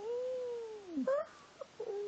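A dog's drawn-out whining, moaning 'talking' vocalization: a long call that arches and then falls in pitch at about one second, a short rising yip just after, and another steady whine starting near the end.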